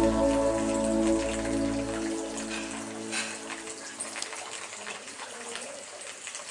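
Soft background music fading out over the first three seconds, leaving the steady trickle and splash of water running in a model nativity scene's miniature stream.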